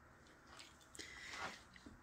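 Near silence, with faint soft handling noises in the second half as a paint-loaded palette knife is lifted from the surface.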